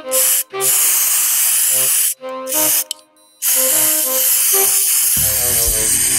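Aerosol hair spray can spraying in four hissing bursts: two short ones, one of about a second and a half, and a last long one lasting several seconds, onto a doll's hair to set it stiff.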